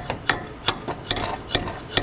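Hammer striking a rusted-in brake hose fitting at a rear disc brake caliper bracket, sharp metal-on-metal blows a little over two a second, knocking rust loose from the seized fitting.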